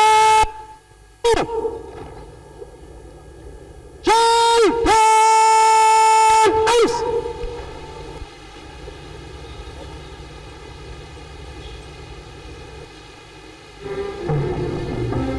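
A parade commander's drawn-out words of command to the guard, each held long and loud on one pitch: one at the start with a short bark a second later, then a two-part command about four seconds in, distorted by its loudness. A steady low outdoor murmur lies between them.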